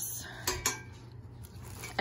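A few light metallic clinks as the metal rods and wire shelf of a rolling clothing rack are handled, then quieter handling noise.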